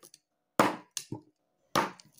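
Knife blade chopping through sugarcane joints against a wooden block: three sharp chops about half a second apart.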